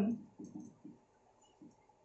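Whiteboard marker writing a word: a handful of short, faint strokes and taps of the felt tip on the board.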